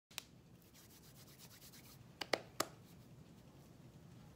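Hands rubbing and handling things on a table: a soft rubbing, a sharp click at the very start, and three quick sharp taps just past two seconds in.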